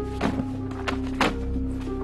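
Background score with sustained held notes, over three short thuds of paper folders and files being dropped into a cardboard box.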